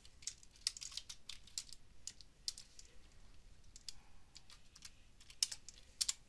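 Typing on a computer keyboard: quiet, irregular keystrokes entering figures, with a couple of sharper clicks near the end.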